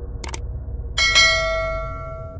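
Mouse-click sound effect, a quick double click, then a notification-bell chime struck twice in quick succession about a second in and left ringing out.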